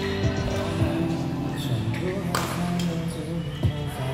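Background music with singing playing through a large hall, with several sharp racket hits on a badminton shuttlecock over it, the loudest about two and a half seconds in.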